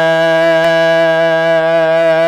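A man's voice holding one long, steady chanted note in Arabic xasiida recitation, its pitch unwavering.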